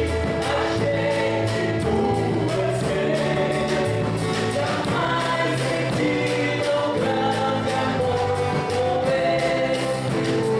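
Live gospel worship song: a woman and a man singing into microphones, backed by a small band of guitars and a drum kit playing a steady beat, heard through the hall's PA.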